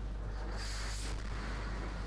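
Quiet room tone with a steady low electrical hum from the sound system, and a brief soft hiss about half a second in.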